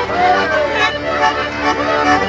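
Traditional Ciociaria folk dance music led by accordion: held chords under a melody line that slides up and down in pitch, steady and unbroken.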